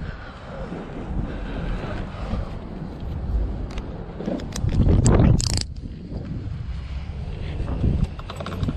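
Wind rumbling on the camera microphone, with a few sharp clicks a little before the middle and a louder burst of noise about five seconds in.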